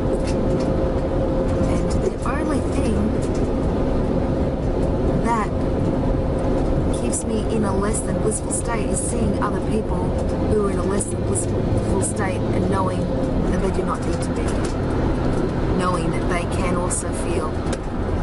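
Car cabin noise on the move: a steady low road and engine rumble with a faint steady hum that fades out about two-thirds of the way through.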